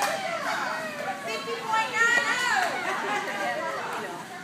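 Women's voices talking in high, lively tones, the words indistinct, loudest about two seconds in.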